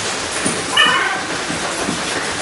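Steady hubbub of a group training in a gym hall, with one short high-pitched sound a little under a second in.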